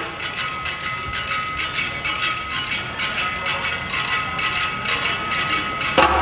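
A group of percussionists clicking wooden sticks: a dense, uneven patter of light wooden clicks with no deep drum beats.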